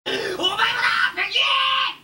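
Shouted speech: an anime character's loud, strained voice delivering a line in Japanese.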